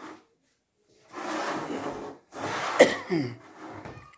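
Two breathy, cough-like bursts from a person, the second ending in a falling voiced sound. A single sharp click comes just before the second burst trails off, from a wooden carrom piece set down on the board.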